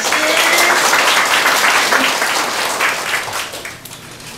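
Audience applause, a dense patter of many hands clapping, which fades away near the end.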